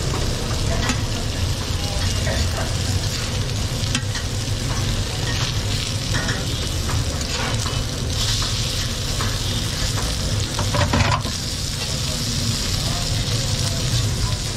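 Shami kababs frying in oil on a large flat iron griddle (tawa), sizzling steadily, while a metal spatula scrapes and taps on the griddle as the kababs are pressed and turned. The sizzle gets louder about eight seconds in as a kabab is lifted and flipped.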